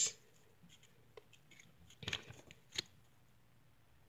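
Faint handling of a Pokémon booster pack and its cards: a few soft rustles and clicks, the sharpest about two seconds in and again just under three seconds in.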